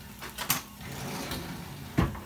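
Metal utensils clinking as a hand rummages in a kitchen drawer, with a couple of sharp clinks about half a second in and another at the end, over the faint sizzle of pancake batter on a hot griddle.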